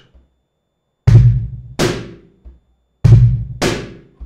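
Wooden cajon played in a three-stroke pattern, twice: a deep palm bass tone, then a sharp high slap, then a very light finger tap. The set repeats about two seconds later.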